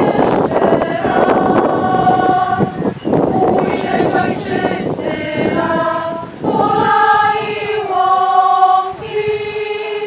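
A choir of women's voices singing held notes in phrases, with short breaks for breath about three seconds in and again past the middle.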